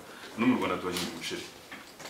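A person speaking briefly.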